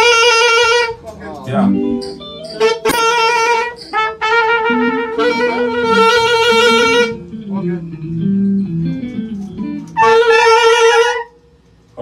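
Horn section of saxophone and trombone rehearsing a riff in long, loud held notes, stopping and restarting several times. Quieter, lower-pitched phrases come between the horn blasts, and the horns cut off sharply shortly before the end.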